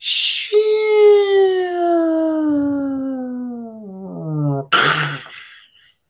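A man's long groan sliding steadily down in pitch for about four seconds, a sound of dismay at a bad run of bets, ending in a short breathy exhale.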